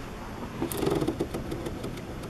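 Smith Corona SD 300 electronic typewriter printing a stored line of text by itself: its motor hums and the print mechanism strikes characters in a quick run of clicks around the middle.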